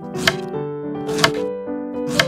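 Small knife chopping fresh coriander on a miniature bamboo cutting board: two sharp chops about a second apart, over background piano music.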